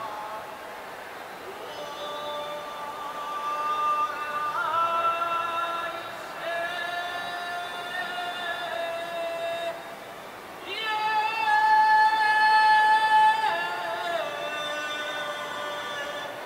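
A solo melody of long held notes, sliding up or down into each new pitch, with no drum strokes; it grows louder in the middle and is loudest on one high note held for a couple of seconds about eleven seconds in.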